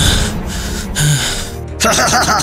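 Two long, heavy gasping breaths from a cartoon character's voice over background music, then a man's voice starts speaking near the end.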